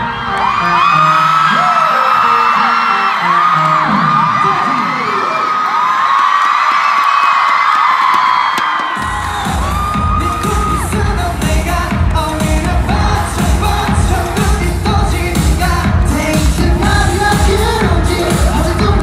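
Live K-pop concert music over the arena sound system, heard from within the crowd, with high-pitched cheers from the fans riding over it. For the first half the song is light with no bass; about halfway through, a heavy bass and drum beat comes in.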